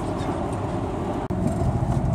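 Road and engine noise inside a moving car's cabin: a steady low rumble under a hiss, with a brief break just past a second in.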